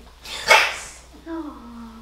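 A person imitating a cat gives one loud, sharp hiss about half a second in. A short voiced sound falling in pitch follows near the end.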